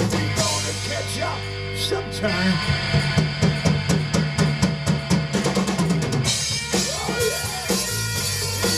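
Live rock band playing an instrumental passage: drum kit with bass drum and snare, electric bass and electric guitar. In the middle of the passage the drums play a fast, even run of strokes for about three seconds.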